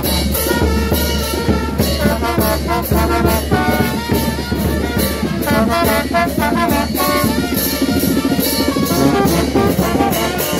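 A street brass band playing: trumpets and trombones over a sousaphone, with drums and cymbals keeping a steady beat.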